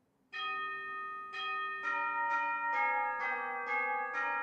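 Bells chiming: about seven strikes, each at a different pitch, starting about a third of a second in and coming roughly every half second after a first longer gap, each left ringing so the tones overlap.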